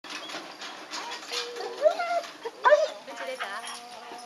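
German Shepherd whining and yelping in several short cries that rise and fall in pitch, after a run of clicks and rattles from the wrought-iron gate in the first second and a half.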